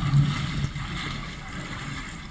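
Water sloshing in a flooded underground mine tunnel, loudest at the start and fading over the two seconds.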